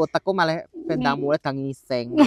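A woman's voice in short bursts of speech-like vocal sounds with brief gaps between them, no clear words.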